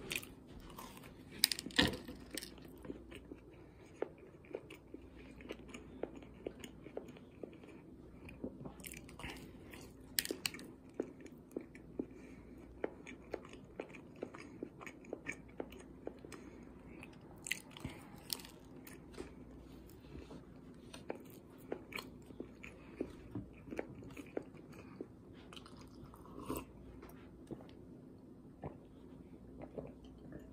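A person biting into and chewing a sprinkle-covered frosted doughnut close to the microphone: faint, steady mouth clicks and chewing, with a few louder bites at intervals.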